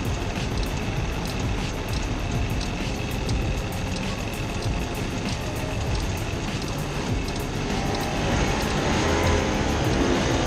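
Small petrol go-kart engines idling at a stop, then revving up as the karts pull away near the end.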